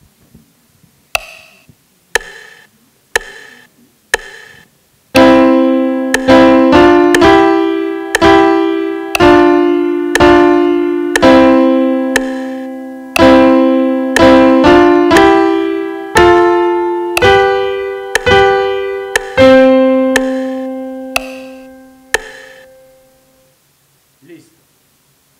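The sampled piano voice of a music-learning app's on-screen keyboard. First comes a four-beat metronome count-in, one click a second at 60 bpm. Then a simple melody is played in notes about a second apart, over a recorded bass line, and it ends on a long held note that fades away.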